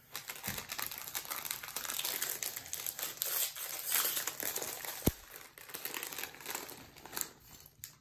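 A Lego minifigure plastic blind bag crinkling as it is handled and torn open, with one sharp snap about five seconds in.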